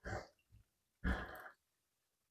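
Two short, faint breaths, like soft sighs: one at the start and one about a second in.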